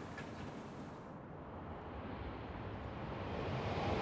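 An approaching Shinkansen bullet train heard as a steady rushing noise that slowly grows louder toward the end.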